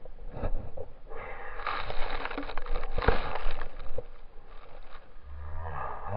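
A snowboard's edge scraping and hissing as it carves through snow, with knocks over bumps; the scraping is loudest in the middle stretch. Near the end a person's drawn-out, wavering groan begins.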